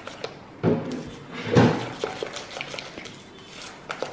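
Wet cake batter being stirred with a black plastic utensil in a glass mixing bowl: a soft wet churning with small ticks of the utensil against the glass, and two louder knocks about a second apart early on.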